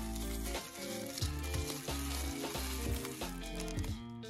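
Bubble wrap crackling and crinkling as it is handled, a dense steady crackle that thins out near the end, over background music with a bass line.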